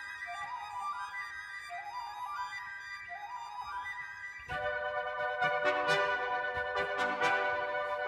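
Symphony orchestra playing: violins repeat quick rising figures, each climbing in steps, about every second and a half. About halfway through, the full orchestra comes in louder with sharp accents.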